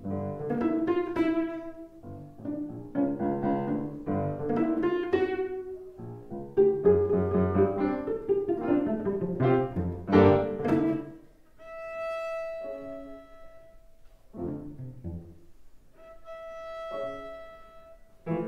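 A cello and a grand piano playing classical chamber music. A run of short, quickly fading notes is followed by two long held high notes, the first just past the middle and the second near the end.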